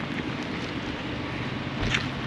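Outdoor ambience dominated by wind noise on the microphone over a steady low hum, with a brief louder noise near the end.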